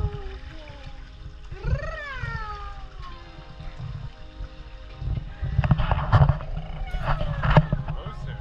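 A baby's short squeal, rising then falling in pitch, about two seconds in. It is followed from about five and a half seconds by several quick bursts of pool water splashing and sloshing.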